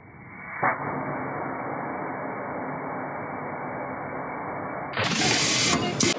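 Edlund can crusher running after a sharp click a little over half a second in, a steady mechanical noise with a low hum. For the last second a louder, hissy noise covering the whole range takes over.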